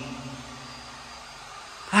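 A man's drawn-out word trailing off at the start, then steady low background hiss with no distinct sound until he speaks again near the end.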